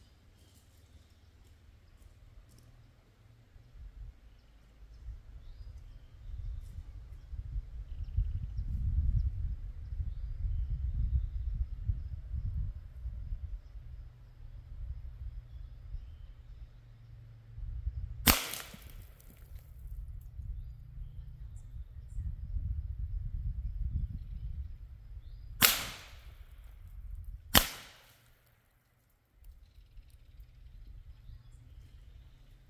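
Three sharp cracks with a short ring after each, from shots of a .357 Western Rattler big-bore air rifle firing slugs at a coconut 50 yards off, heard from the target end. The first comes a little past halfway, the other two close together near the end, over a low, gusting rumble.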